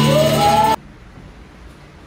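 Live church worship band playing, with a held note that rises in pitch, cut off abruptly about a third of the way in. After that only quiet room tone.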